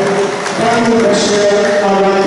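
Ring announcer's amplified voice over the hall's PA, drawing out words in long held tones as he introduces a boxer.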